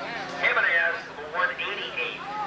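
A man's voice calling the race, the track announcer speaking without a break.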